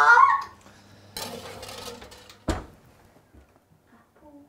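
A baking tray going into a kitchen oven: about a second of scraping noise, then a single thump as the oven door is shut.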